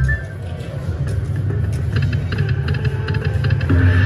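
Ainsworth Grand Dragon slot machine's free-games audio: a bass-heavy electronic tune that dips briefly at the start. A run of quick clicking sound effects follows through the middle, and the music swells back near the end.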